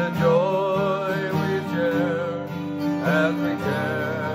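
A man singing a slow hymn with a wavering, vibrato voice, accompanied by an acoustic guitar.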